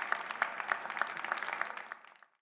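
Audience applauding, many hands clapping, fading out near the end.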